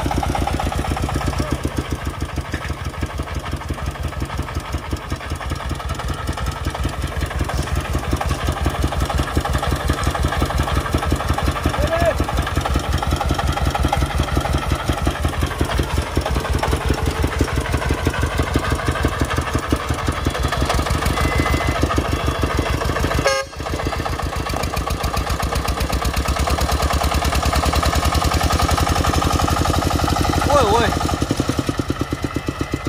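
Single-cylinder diesel engine of a loaded công nông farm dump truck chugging with a fast, even beat, working under load to move the truck over soft, churned ground. The sound drops out for a split second about three-quarters of the way through and gets a little louder near the end.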